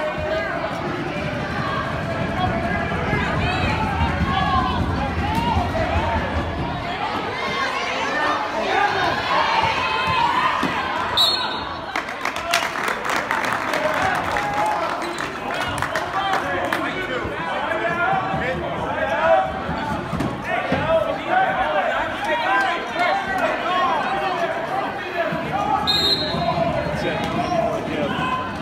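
Basketball bouncing on a gym floor amid the chatter and voices of a crowd in the stands. Short knocks come thickest about twelve to sixteen seconds in, and there are two brief high tones, about eleven and twenty-six seconds in.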